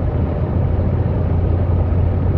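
Car driving at about 60 km/h, recorded inside the cabin by a windscreen dashcam: a steady low rumble of tyres and engine with a constant low hum.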